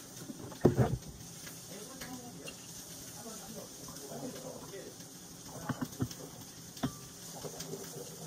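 Kitchen-counter handling noise: one loud thump under a second in, then a few sharp knocks and clinks near the end as a vodka bottle is poured into wine glasses, with faint voices in the background.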